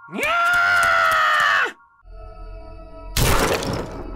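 Cartoon sound effects over a faint music bed. A loud, long pitched cry or whoop swoops up, holds for about a second and a half, and drops away. About three seconds in, a short noisy crash or whoosh follows.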